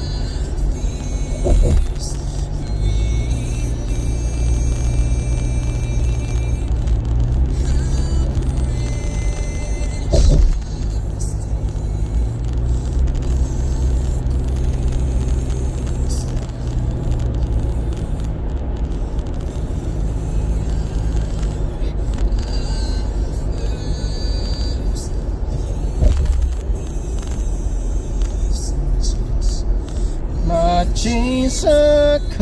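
Music playing inside a moving car over the steady low rumble of road and engine noise at highway speed, with a few brief thumps.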